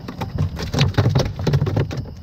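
Rapid, irregular splashing and slapping of water: a fish shot with a bowfishing arrow thrashing at the surface as it works itself free of the arrow.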